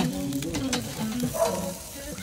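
Fish and chicken wings sizzling over hot charcoal on a grill grate, with a metal spatula working under the fish.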